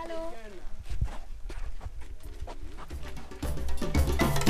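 Indistinct voices at the very start, then scattered knocks and low thumps from walking and handling on a dirt trail. About three and a half seconds in, upbeat percussive background music comes in loudly and becomes the loudest sound.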